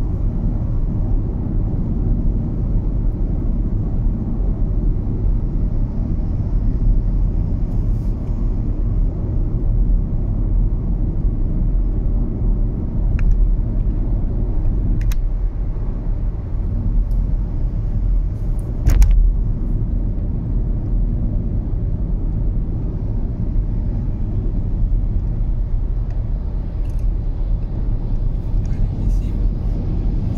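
Steady low road and engine rumble of a car cruising at highway speed, heard from inside the cabin. A few brief clicks break through, the sharpest a short knock about two-thirds of the way through.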